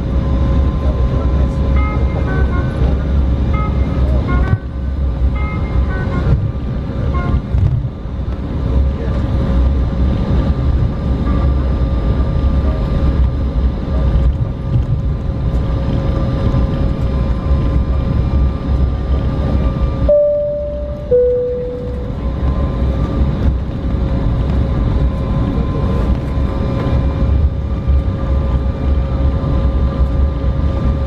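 Jet airliner cabin noise during taxi: a steady low engine rumble with a faint steady whine. About twenty seconds in, a two-note high-low cabin chime sounds.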